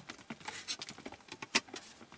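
Footsteps on a wooden shop floor and reclaimed planks knocking against a workbench, heard as a quick, irregular patter of clicks and taps.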